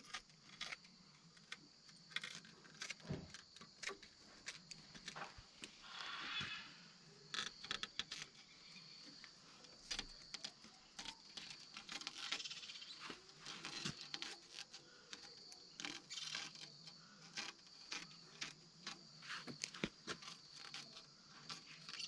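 Scissors snipping through plastic shade netting, faint small irregular clicks with rustling of the mesh as the excess is trimmed away.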